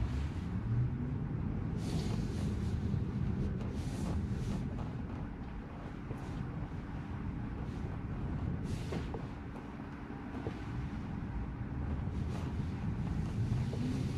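Low road and tyre rumble inside a Tesla's cabin as the electric car drives slowly, with a few brief hissy noises.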